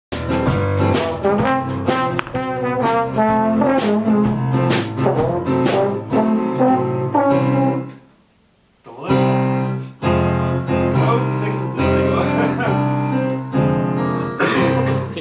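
A small jazz combo of keyboard, drum kit and trombone playing a lively jazz arrangement with quick runs of keyboard notes. About eight seconds in the music breaks off for under a second, then picks up again.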